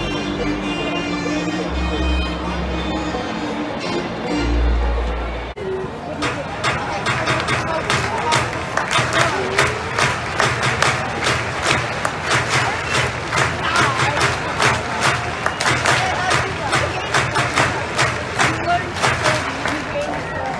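Stadium organ music over the ballpark PA, with steady held notes and a heavy bass beat. About five and a half seconds in it gives way suddenly to a ballpark crowd clapping in a steady rhythm, over crowd chatter.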